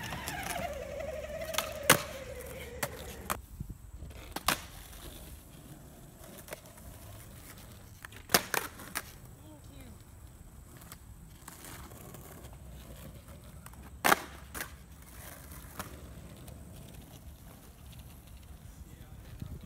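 Skateboard wheels rolling on asphalt, broken by sharp pops and clacks of the board as tricks (ollie, heelflip) are popped and landed: the loudest about two seconds in, near four and a half, eight and a half and fourteen seconds in. A tone falls slowly in pitch over the first three seconds.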